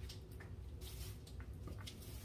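Light handling clicks and a brief rustle as a hair dryer is picked up from a plastic-covered table, over a steady low hum.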